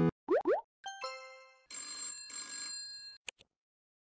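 Sound effects for a subscribe-and-like reminder animation: two quick rising swoops, a bright chime, then a small bell ringing in two short bursts, and a single click near the end.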